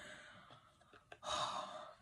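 A woman's sigh, one breathy exhale of under a second starting a little over a second in, after a fright over a photocard she briefly took for official. A faint click comes just before it.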